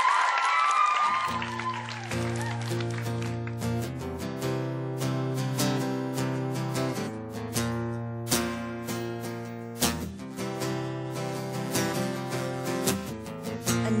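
Studio audience clapping and cheering, with high screams, dying away in the first second. Then a guitar strums the intro of a pop song in steady, regular chords.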